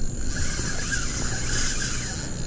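Spinning reel being cranked with a fish on the line: a steady mechanical whir.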